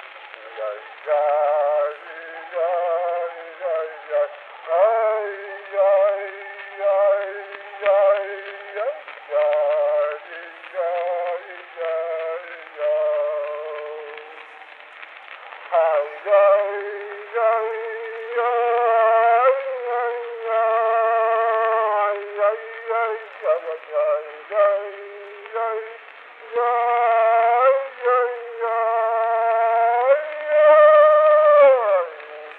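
Recording of a man singing a slow Yiddish song with no percussion, in phrases of long held notes with a wavering vibrato and gliding pitch, played back over a video call with thin, narrow sound.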